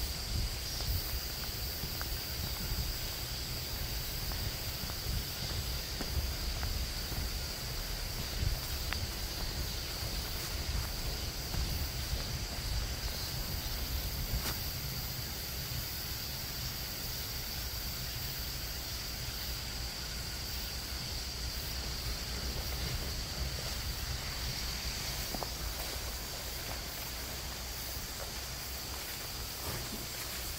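Insects in the surrounding woods keeping up a steady, high, unbroken chorus, over a low rumble on the microphone and a few faint rustles.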